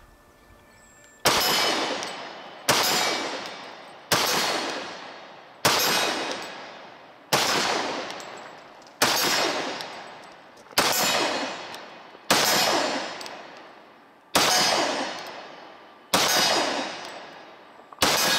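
A Walther PPQ M2 pistol in .40 S&W fired ten times in slow, deliberate single shots, about one every one and a half to two seconds, starting a little over a second in. Each loud report trails off in echo before the next.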